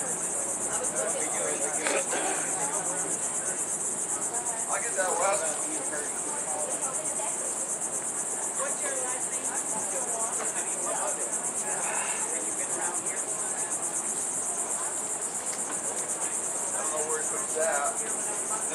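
Insect chorus outdoors in summer greenery: a steady, high-pitched buzzing that runs on without a break, with faint voices in the background.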